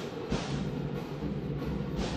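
Arena sound of a basketball game in play: drumming over a steady crowd din, with a few faint knocks.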